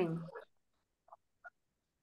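A spoken word trailing off over the first half-second, then near silence on the call audio, broken only by two faint, very short sounds about a second and a half second apart.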